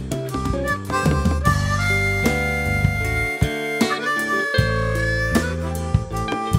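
Harmonica solo of long held notes, some bent in pitch, over a live band's bass line and drums.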